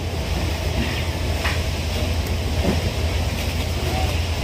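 A steady low rumble with an even hiss above it, unchanging throughout.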